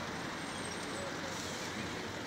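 Steady urban traffic noise from nearby roads, an even rushing hum with no single vehicle standing out.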